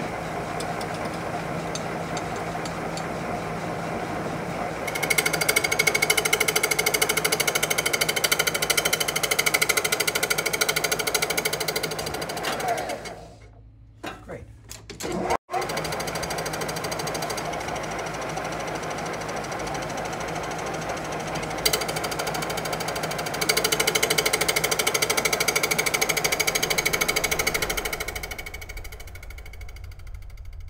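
Metal lathe running, turning a wooden handle blank, with a cutting tool taking two louder, chattering passes along the spinning wood. The sound cuts out sharply for about two seconds around 13 s in, then the lathe runs on and quietens near the end.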